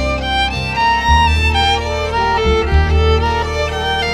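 Instrumental break of a slow devotional song with no singing: a sustained melody line over deep bass notes that change about every second and a half.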